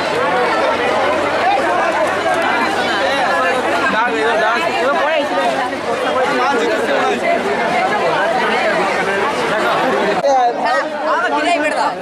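Crowd chatter: many people talking at once around the listener, a steady babble of voices.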